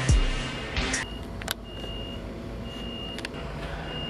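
Music with deep falling bass sweeps plays for about the first second, then drops away. From then on a high electronic beep repeats about once a second, each beep about half a second long, over a low steady hum.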